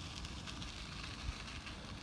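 Bicycle tyres rolling over a gravelly dirt surface: a steady crackling rustle with a low rumble underneath and one slightly sharper click a little past halfway.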